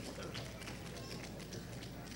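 Quiet ceremony-hall ambience: a steady low hum with scattered faint clicks and rustles.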